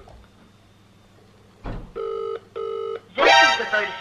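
Ringback tone of an outgoing phone call: one British-style double ring, two short steady tones in quick succession about two seconds in, after a quiet pause. A voice starts near the end.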